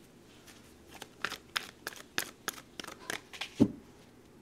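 A deck of tarot cards being shuffled by hand: a quick run of about ten crisp card slaps, ending in a single low thump, the loudest sound, as the deck meets the table.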